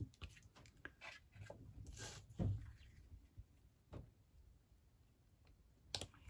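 Quiet rustles and light taps of card stock being handled and pressed down on a craft mat, with one soft thump about two and a half seconds in.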